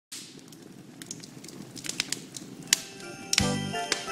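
Crackling log fire: irregular sharp pops over a soft hiss, coming more often as it goes. A little over three seconds in, music starts with a heavy beat.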